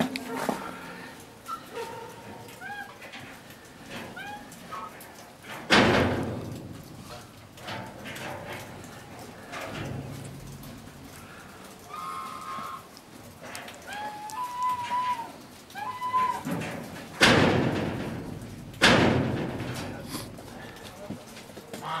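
Three loud bangs of an animal enclosure being knocked, each ringing on for a moment: one about six seconds in and two close together near the end, most likely black bears bumping the wire mesh and plank walls. Between them, short chirping calls and low voices.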